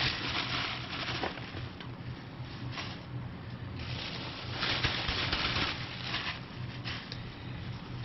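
Plastic bubble wrap crinkling and rustling in irregular bursts as it is shaken and handled over a worm bin's bedding, loudest about halfway through.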